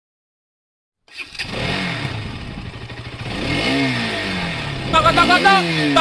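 Motorcycle engine revving up and down several times, starting after about a second of silence. A music track with a repeating chirpy beat comes in near the end.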